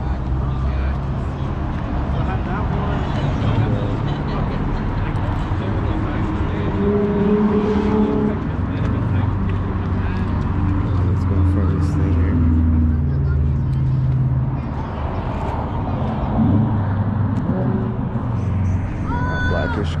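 Car meet ambience: a low, steady rumble of a car engine running, under the voices of people talking nearby.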